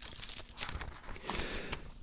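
Iron chain rattling: light metallic clinking and jingling that stops about half a second in, leaving a faint hiss.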